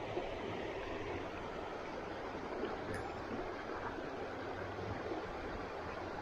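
Steady rush of creek water running over shallow riffles.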